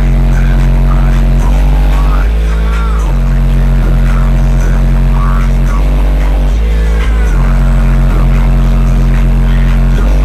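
Six 18-inch subwoofers in a sealed-up SUV playing very loud sustained bass tones (hot notes), heard from outside the vehicle. The low note holds steady, then steps to a new pitch every second or two.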